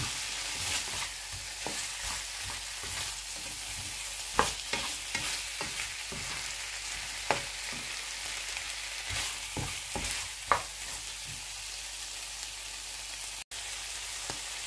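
Shell-on shrimp sizzling in butter and sambal in a nonstick frying pan, stirred and turned with a slotted spatula that scrapes and knocks against the pan, with a few sharper knocks along the way.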